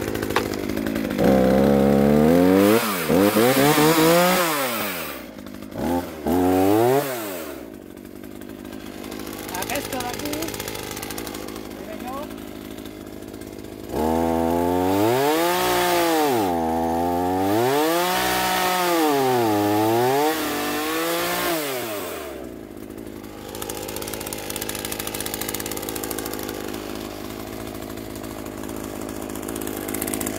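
Two-stroke petrol chainsaw started with a pull on its cord and revved in a few bursts, then idling. In the middle it runs at full throttle for about eight seconds, cutting through a vertical olive branch, its pitch dipping and recovering again and again as the chain bites into the wood. It then drops back to idle.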